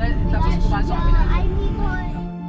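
Voices talking inside a car's cabin over the steady low rumble of the car driving.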